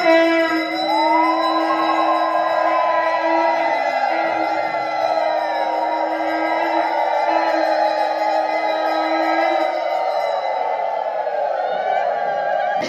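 Conch shell (shankha) blown in one long, steady note that stops about ten seconds in, over a crowd of overlapping voices rising and falling in pitch.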